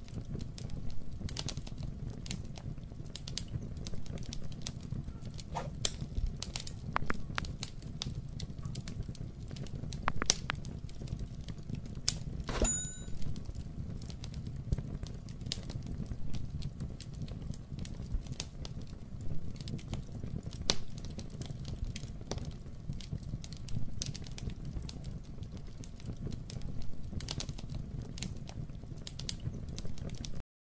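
Dark ambient background sound bed: a steady low rumble with irregular crackling clicks throughout, and one brief ringing ping about twelve seconds in.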